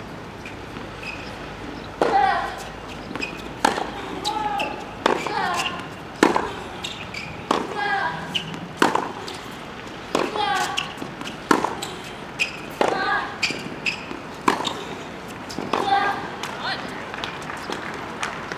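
Tennis rally: racquets striking the ball about every second and a quarter from about two seconds in, most strokes followed at once by a player's short grunt.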